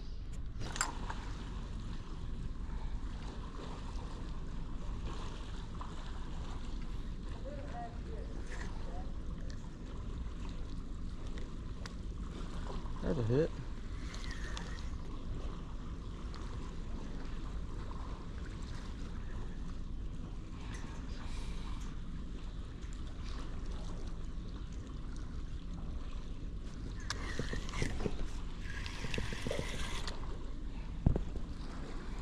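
Steady low rumble of wind buffeting the microphone outdoors, with a brief swooping sound about 13 seconds in.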